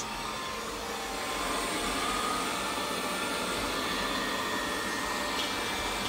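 Robit V7S Pro robot vacuum running steadily on a hardwood floor in random cleaning mode, a continuous whir with a faint whine in it.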